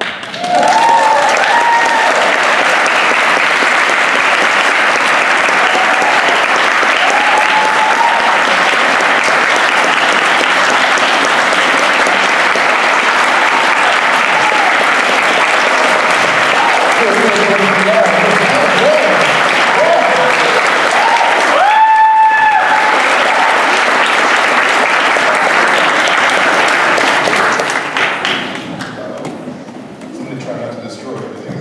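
Concert audience applauding hard and cheering, with voices calling out through the clapping and one louder held whoop near the middle. The applause dies away over the last couple of seconds.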